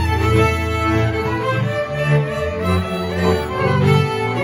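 A Hungarian folk string band playing a Kalotaszeg "magyar" couple-dance tune: several fiddles bowing the melody together over a bowed bass line.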